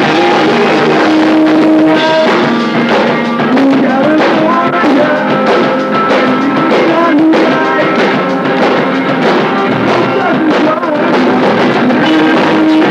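Emo rock band playing live: electric guitar, bass and drum kit going loud and without a break, taken by a camcorder's built-in microphone in a small hall.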